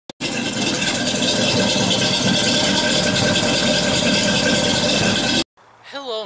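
A car engine and exhaust running loud and steady, with no revving. It cuts off suddenly about five and a half seconds in.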